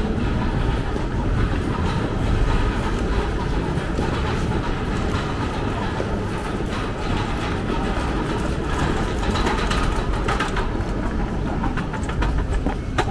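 Metro train running with a steady low rumble and rattle.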